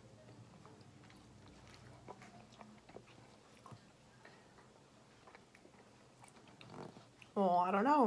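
Very quiet room with faint chewing and scattered small clicks as chocolates are eaten and handled. A voice starts talking near the end.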